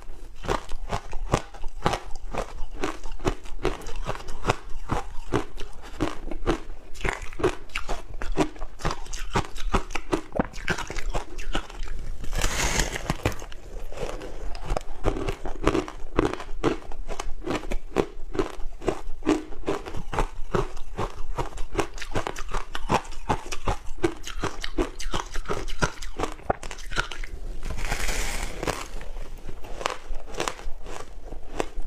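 Ice coated in dry matcha powder being bitten and chewed close to a clip-on microphone: a dense, continuous run of crisp crunches and crackles, with two louder crunches, one about twelve seconds in and one near the end.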